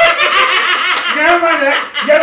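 A man and a woman laughing loudly together, in quick broken bursts of voice.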